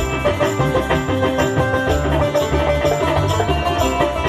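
Live band music with no singing: a barrel hand drum plays a quick, steady rhythm under a melodic instrumental line.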